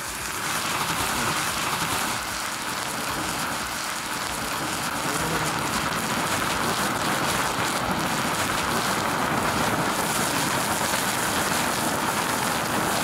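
A dried burger burning violently in molten potassium chlorate, a loud, steady rushing hiss like heavy rain. The chlorate is breaking down and releasing oxygen, which drives the fierce combustion.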